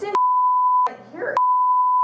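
Broadcast censor bleep: a loud, steady single-pitch beep masking profanity. It comes in two stretches, the first under a second long and the second longer, with a brief snatch of voice between them.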